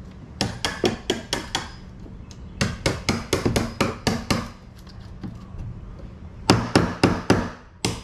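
Claw hammer striking in three quick bursts of sharp blows, about five a second, with a single blow near the end.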